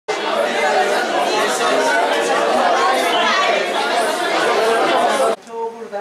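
Crowd chatter: many people talking at once, a dense, continuous babble of voices that cuts off suddenly about five seconds in.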